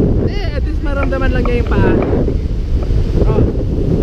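Strong wind buffeting the camera microphone in a steady low rumble, with surf washing on the beach beneath it. About half a second in, high-pitched voices call out for a second and a half.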